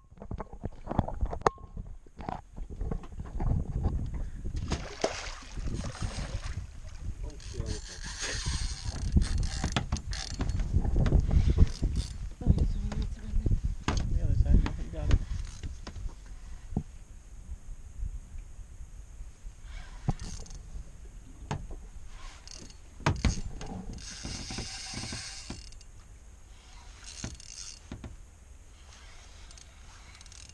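Spinning reel being cranked and a fishing rod handled aboard a small boat, with scattered clicks and knocks against the hull. A low rumble swells in the middle stretch and fades toward the end.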